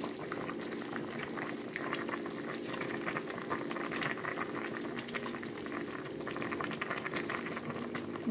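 Broth boiling hard in a pot, a steady bubbling full of small pops, as kale and green beans are stirred and pushed into the liquid with a spatula. A steady low hum runs underneath.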